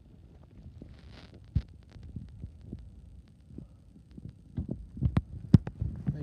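Footsteps and knocks from a handheld camera being carried while walking, over a low rumble; the thumps come faster and louder near the end, the loudest about five and a half seconds in.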